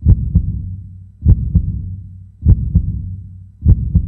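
Heartbeat sound effect: four double thumps in a lub-dub pattern, about one beat every 1.2 seconds, each trailing a low hum that fades away.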